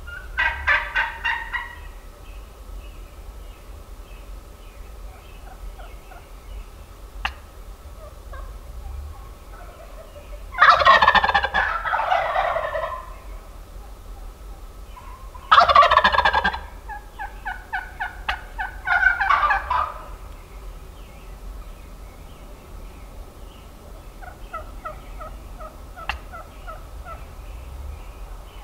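Wild turkey gobblers gobbling several times, the loudest gobbles about ten and fifteen seconds in, with softer, evenly spaced turkey calls between them and near the end.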